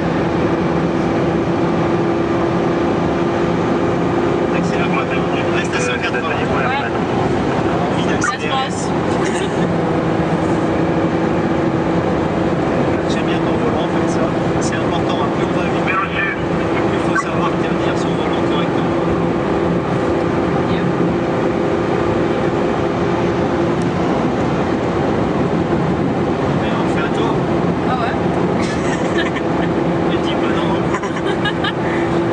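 Ferrari FF's V12 heard from inside the cabin while driving at a steady speed, a steady engine note over tyre and road noise. The note briefly eases or changes about six to nine seconds in, then holds steady again.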